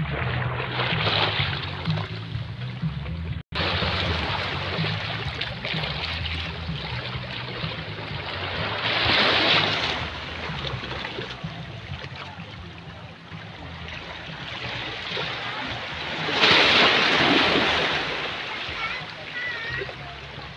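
Small waves washing onto a sandy beach, the wash swelling louder about every eight seconds. The sound cuts out for an instant about three and a half seconds in.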